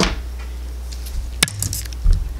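Makeup products being handled: one sharp click about 1.4 seconds in, with a few lighter clicks after it, over a steady low hum.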